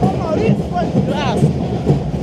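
School marching band (fanfarra) drums playing a steady marching beat, with voices of people around them and a short rising-and-falling call about a second in.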